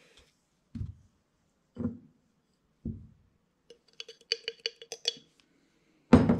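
Three dull knocks about a second apart as things are set down on a bench, then a quick run of light clinks with a short ring, like hard items tapping a glass jar.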